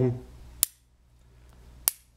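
Two sharp clicks about a second apart: the magnetic metal end caps of a USB battery-charging cable snapping together.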